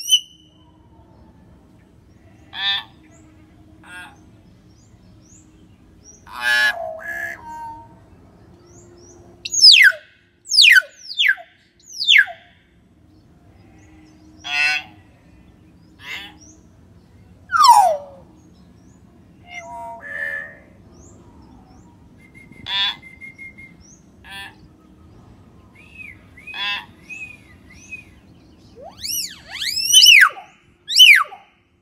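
Common hill myna calling: loud, separate calls every second or two, many of them sharp whistles sliding steeply downward, others short harsh or rattling notes, with brief pauses between.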